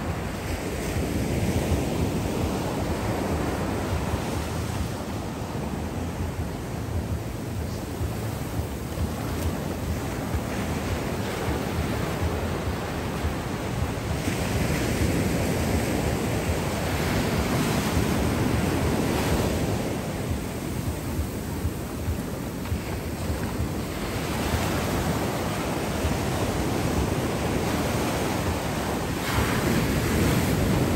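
Ocean surf breaking and washing up a sandy beach, a steady rushing wash that swells and eases every several seconds as each wave comes in.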